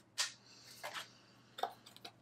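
A deck of tarot cards being shuffled by hand: a few soft, brief flicks and slides of card stock, the loudest shortly after the start.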